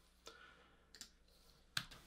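Three faint clicks from a computer keyboard and mouse during code editing, about three-quarters of a second apart, the last the loudest.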